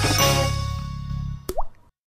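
TV programme closing jingle with bass and sustained notes fading down, capped by a single water-drop 'plop' sound effect with a short upward pitch glide about one and a half seconds in, then the audio cuts off.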